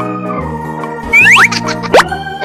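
Background music with a steady bass line, then about a second in a burst of loud cartoon sound effects: several quick rising whistle-like glides, ending in a sharp upward sweep.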